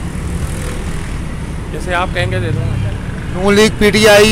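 Steady low rumble of street traffic and running vehicle engines, with a deeper engine hum for a moment about halfway through.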